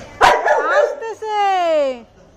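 A yellow Labrador-type dog gives a sharp yelping bark, then a long whining howl that slides steadily down in pitch, calling out excitedly at hearing a familiar person's voice.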